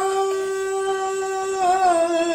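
A man singing alone, holding one long steady note with a small waver near the end.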